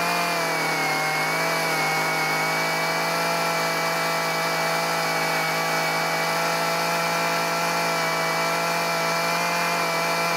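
Small chainsaw with a carving bar running at a steady speed as it lightly brushes wood out of a pocket cut in a log, the engine note dipping slightly about a second in and then holding even.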